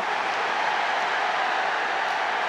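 Football stadium crowd cheering a goal just scored: a steady wash of crowd noise with no single voice standing out.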